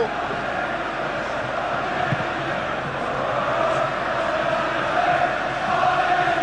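Stadium crowd at a football match: a steady noise of many voices with chanting, swelling slightly toward the end.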